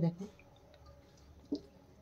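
A single short click about one and a half seconds in, a spatula knocking against the metal pot as it lifts cooked biryani rice; otherwise quiet.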